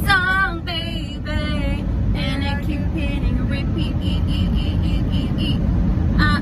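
Women singing along to a pop song inside a moving car, over a steady low road rumble. A short run of high, evenly repeated notes comes about two-thirds of the way through.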